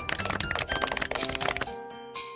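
Applause: many hands clapping in a dense, quick patter over light background music. The clapping stops near the end as chiming tones come in.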